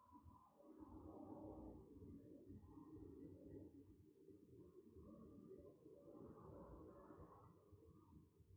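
Near silence: faint room tone with a soft, high cricket chirp pulsing evenly, about four times a second.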